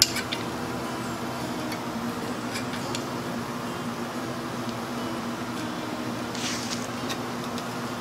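Caulking gun squeezing a thin bead of silicone along a window frame ledge, with a few faint clicks and a short hiss about six and a half seconds in, over a steady mechanical hum.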